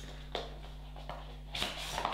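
A small cardboard box being opened and handled: a short click early on, then a louder sliding scrape near the end as the inner card tray comes out, over a steady low electrical hum.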